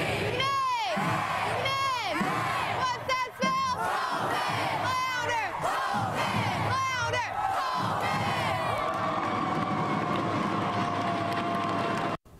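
A crowd of high school students in a gym screaming and cheering, with repeated whooping yells rising and falling, then one long held yell over the last few seconds.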